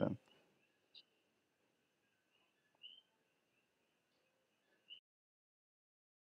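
Near silence: faint room hiss with a thin steady high tone and three brief, faint high blips about one, three and five seconds in, then the sound drops out completely.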